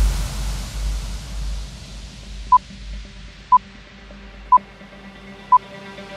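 Countdown timer beeps: four short electronic beeps one second apart, marking the last seconds of a rest interval before the next exercise starts. Faint electronic background music fades out underneath after a low hit at the start.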